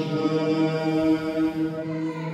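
Chanting with long, steady held notes.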